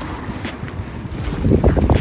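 Wind buffeting the microphone outdoors, a low rumbling noise that gets louder in gusts about one and a half seconds in.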